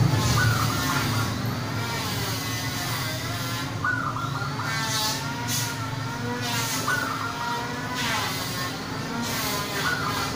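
Zebra doves (perkutut) cooing in phrases about every three seconds, each opening with a short high note and running into a wavering, trilled coo.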